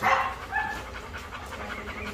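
Faint dog sounds in the background, with a short high call about half a second in.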